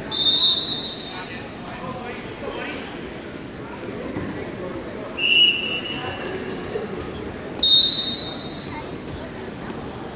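Referee's whistles blowing three short blasts: one right at the start, one about five seconds in and one just before eight seconds. The middle blast is lower in pitch than the other two. Under them runs a steady murmur of voices from the gym crowd.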